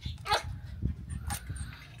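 A dog giving three short yelps about half a second apart, the first the loudest.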